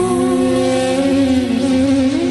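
Background music score: held, slowly gliding sustained notes with no beat, a low line rising in pitch near the end.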